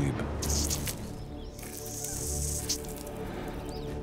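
Background music with long held tones, with a hissing spray about one and a half seconds in, lasting about a second: an archerfish's jet of water shooting up at a spider on a branch.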